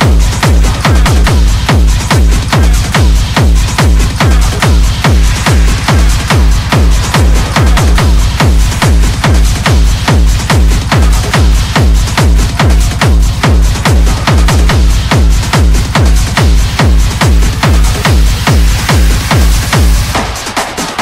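Techno in a continuous DJ mix: a heavy kick drum on a steady beat a little over two times a second, under busy high percussion.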